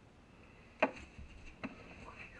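Two short, light clicks about a second apart over quiet room tone.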